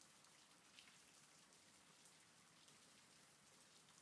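Faint, steady rain: an even patter of raindrops with individual drops ticking, one a little louder about a second in.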